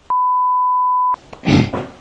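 A single steady pure beep at about 1 kHz, lasting about a second, with all other sound cut out beneath it: a censor bleep dropped into the speech.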